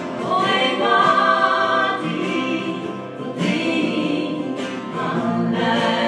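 A woman singing a Norwegian song live in three held phrases, accompanied by acoustic guitars.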